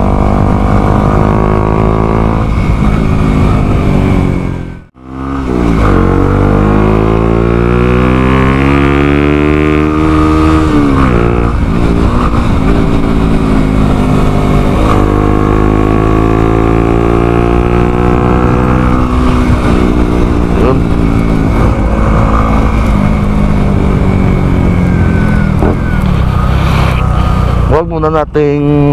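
Motorcycle engine under way, heard from the rider's position with wind noise. It cuts out briefly about five seconds in, then climbs steadily in pitch for about five seconds and drops sharply at a gear change, then runs on with gentler rises and falls in pitch.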